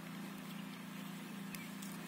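A steady low motor drone, with one faint tick about one and a half seconds in.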